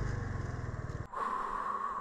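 Motor scooter engine idling with a low, even pulse, switched off about a second in. A steady mid-pitched hum carries on after it.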